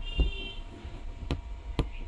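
Aari hook needle punching through cloth stretched taut on an embroidery frame: three sharp ticks at uneven intervals, over a low steady hum.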